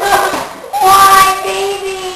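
A child's voice singing: a short phrase, then a long held note of about a second.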